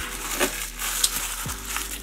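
Balled-up tissue paper crinkling as it is handled, with a light knock on the wooden bench about one and a half seconds in.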